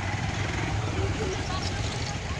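A vehicle engine runs steadily in a low, even rumble. Scattered voices of people talk around it.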